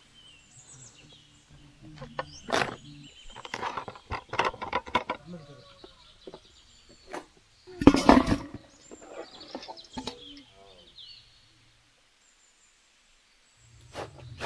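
Watermelon being cut with a knife and chunks of fruit dropping into a steel pot: a string of uneven knocks and clatters, the loudest about eight seconds in. Birds chirp now and then.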